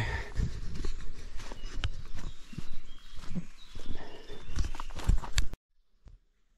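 Footsteps on a leafy woodland path with irregular knocks and rustling, close to a handheld action camera's microphone. The sound cuts off abruptly near the end.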